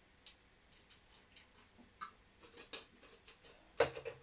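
Faint, irregularly spaced clicks and ticks, growing more frequent after the first two seconds, with one louder knock near the end.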